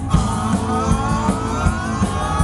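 Live band with horns, keyboard, guitar and drums playing an upbeat rhythm-and-blues number, the drums keeping a steady fast beat. A held note rises slowly in pitch across these seconds.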